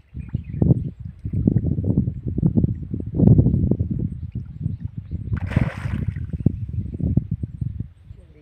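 Irregular low rumbling gusts of wind buffeting the microphone, with a short burst of hissing noise about five and a half seconds in.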